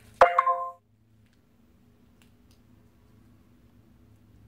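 A sharp click and a short, ringing chime of a few steady tones, cut off abruptly within the first second; after it only faint room tone with a low hum.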